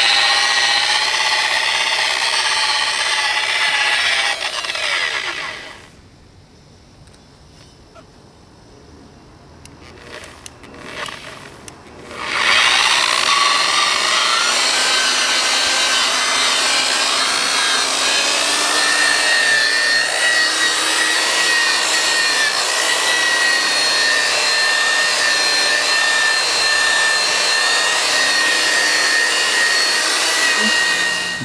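Electric rotary buffer with a wool pad running on a van's painted body panel. It spins down about four seconds in. After a pause of several seconds it starts up again with a rising whine and runs steadily, with a high, steady whine, to the end.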